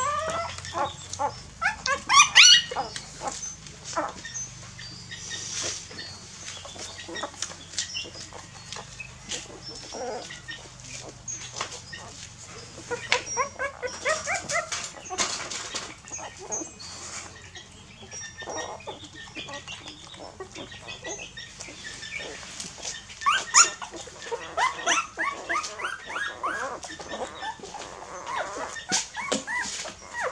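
Young puppies nursing from their mother: many short suckling smacks and clicks throughout. High, squeaky puppy whimpers come about two seconds in and again in the last quarter.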